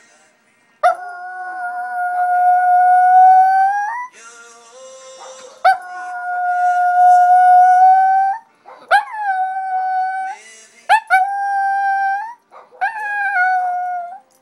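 Shih Tzu howling along to music: two long held howls of about three seconds each, then three shorter ones, each opening with a quick upward swoop in pitch.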